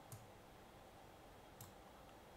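Near silence, with two faint computer mouse clicks: one just after the start and one about one and a half seconds in.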